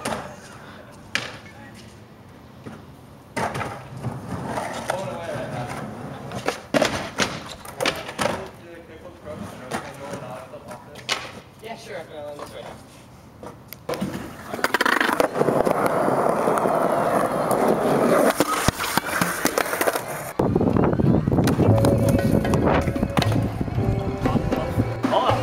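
Skateboard clacking and knocking on concrete: a string of sharp, separate hits from the deck and wheels during trick attempts. Just past halfway, a loud continuous sound takes over, and near the end it carries a steady bass line like music.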